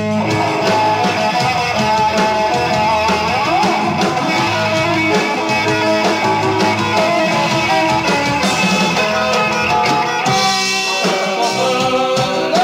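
Rock band playing an instrumental passage live: electric guitar over a drum kit, with a few bent guitar notes.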